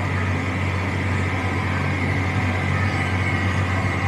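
Tractor engine running steadily under load while pulling a disc harrow, heard from inside the cab as a low, even drone with a steady high whine over it.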